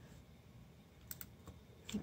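Mostly quiet, with a few faint light clicks a little after a second in and again near the end, from a correction tape dispenser being handled and run over paper.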